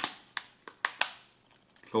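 The plastic back cover of an LG Leon smartphone snapped into place by hand: a quick run of five or six sharp plastic clicks, the first the loudest, as the cover's clips catch around the edge.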